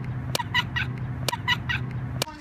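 A girl laughing hard in short high-pitched bursts that come in groups of three about a second apart, with a steady low hum underneath and a couple of sharp clicks.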